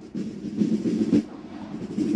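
Marching drums of a percussion corps playing a rhythmic cadence: repeated pulses of drumming with sharp accented strikes, one standing out about a second in.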